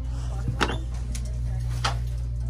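Sneakers being handled on acrylic display shelves, with two sharp clicks, one about half a second in and one near the end, over a steady low hum.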